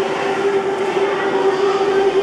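A steady droning hum with one held tone over a noisy hubbub of a large room.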